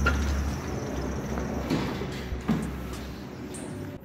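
Glass entrance door opening as someone passes through, with a low rumble and a couple of short knocks around the middle.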